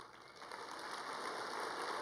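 Audience applauding, starting about half a second in and swelling to a steady level.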